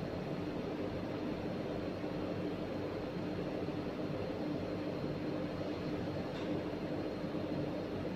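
Steady hum of running ventilation, with a constant low tone under an even rush of air.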